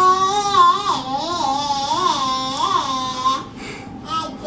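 A young child singing one long drawn-out note that wavers up and down in pitch several times and breaks off about three and a half seconds in.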